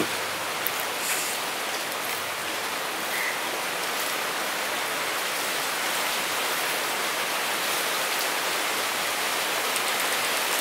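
Steady rain falling, an even hiss that goes on unchanged.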